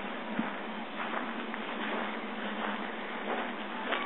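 Cardboard boxes burning in a metal burn barrel: a steady hiss with scattered faint crackles.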